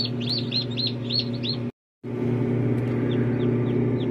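Newly hatched chicks peeping inside an egg incubator: quick downward-sliding cheeps, several a second, over the incubator's steady hum. The sound cuts out for a moment just before halfway, then the hum resumes with the peeps fainter.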